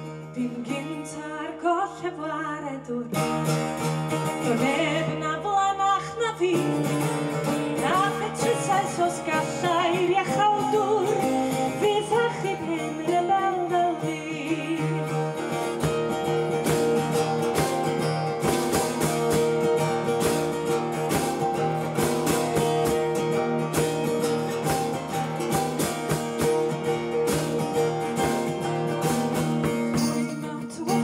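A woman singing to her own strummed acoustic guitar. From about halfway the voice drops out and the guitar strumming carries on alone.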